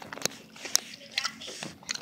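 Someone chewing gummy candy close to the microphone: a few soft wet clicks and smacks spread across two seconds.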